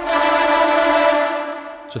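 Sampled tenor trombone section from the Audio Imperia Fluid Brass library, sounding sustained brass notes that fade out about a second and a half in.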